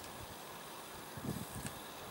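Quiet outdoor background: a faint steady hiss, with a few soft low rumbles in the second half.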